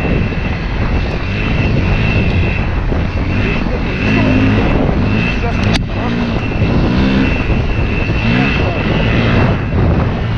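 Dirt bike engine running under load, its pitch rising and falling again and again as the throttle is worked along the trail, heard from a helmet-mounted camera. One sharp click a little before six seconds in.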